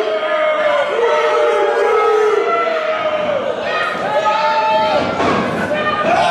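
People in a hall shouting a series of long, drawn-out calls, one after another, over crowd noise.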